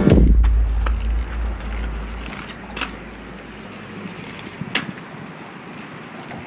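Kick scooter rolling on concrete: a low rumble that fades out over the first two seconds or so, then a few sharp clicks from the scooter's deck and wheels.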